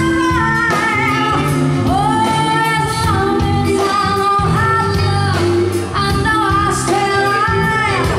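A woman singing live into a handheld microphone over instrumental pop backing with a steady beat, holding long notes that slide up into pitch.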